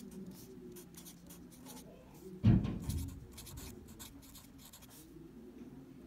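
Handwriting: a run of short, scratchy pen strokes as words are written out. A single loud thump about two and a half seconds in.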